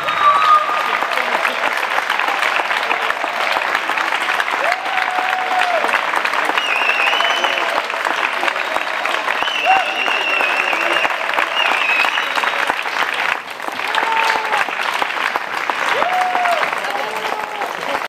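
Audience applauding steadily at the end of a live song, with a few brief voices calling out above the clapping; the applause dips briefly about two-thirds of the way through.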